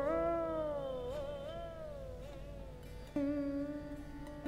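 Siddha Veena, a slide-played Indian lap string instrument, in raga Yaman Kalyan: one sustained note bends up, then glides slowly down with wavering ornaments as it fades. A fresh note is plucked a little after three seconds and held steady.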